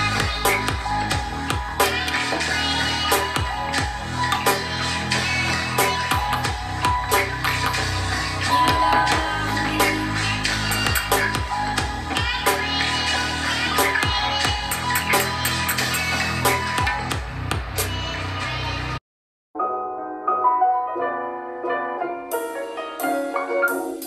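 Music playing from a JBL Charge 4 portable Bluetooth speaker at 60% volume: a bass-heavy track with a steady beat. About 19 seconds in it cuts off abruptly, and after half a second of silence a lighter track with little deep bass begins.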